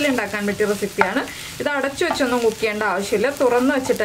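Wooden spatula stirring and scraping crumbled puttu, egg and chicken in a nonstick frying pan, with light sizzling and a sharp tap about a second in. A woman's voice runs over it.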